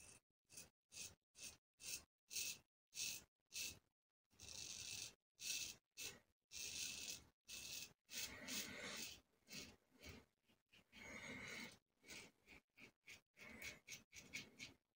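Soluna aluminium double-edge safety razor with a Wilkinson Sword blade scraping through lathered stubble. Faint, quick, scratchy strokes come about two to three a second, with a few longer strokes in the middle.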